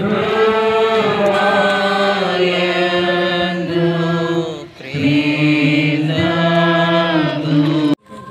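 Slow devotional hymn, sung in long held notes in two drawn-out phrases with a short break for breath about halfway through.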